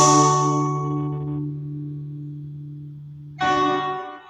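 Nylon-string classical guitar's closing chord ringing out and slowly fading, then one last strummed chord about three and a half seconds in, which is damped soon after.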